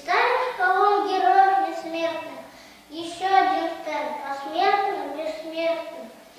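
A young boy's voice reciting Russian verse in slow, drawn-out, sing-song phrases.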